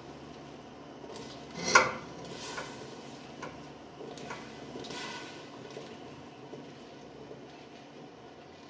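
Cauliflower florets being tipped and pushed from a metal mesh colander into a stainless steel stockpot of hot pickling brine, with a sharp metal clank about two seconds in as the colander knocks the pot, then a few softer clinks.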